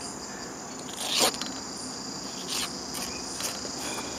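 Insects, likely crickets, chirring steadily on several high pitches, with a short noise about a second in.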